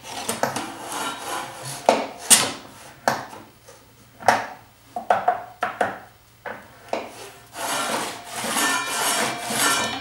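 Wooden boards sliding and scraping on a table saw's metal top and against the rip fence while the saw is switched off, with scattered knocks and clatters of wood on metal. A longer stretch of rubbing comes in the last couple of seconds.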